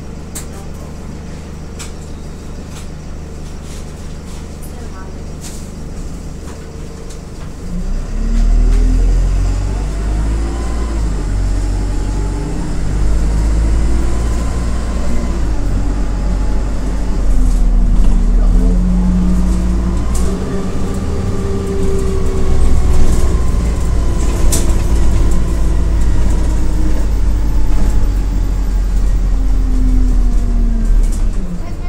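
Diesel engine of a Dennis Dart SLF single-deck bus idling steadily, then about eight seconds in it pulls away and gets louder. Its note rises and drops back several times as the gearbox changes up while the bus accelerates.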